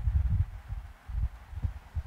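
Irregular low thuds and rumble from a stylus writing on a tablet, carried into the microphone as the strokes of a word are written.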